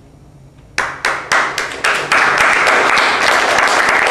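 Theatre audience breaking into applause: a few separate claps about a second in, quickly building into full, steady applause.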